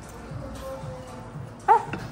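A single short, high-pitched yelp near the end, over quiet background music.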